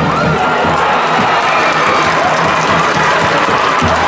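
Baseball stadium crowd cheering and shouting steadily for a home run, with a cheering band's music mixed in.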